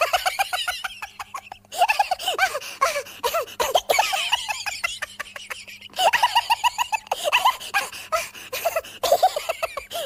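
Several bouts of rapid, high-pitched laughter, quick runs of short ha-ha pulses separated by brief pauses.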